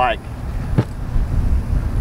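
Uneven low rumble of wind buffeting the microphone outdoors, with one sharp click a little under a second in.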